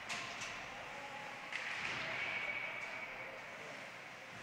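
Ice hockey play on a rink: a steady hiss of skates scraping the ice, with a sharp knock about a second and a half in.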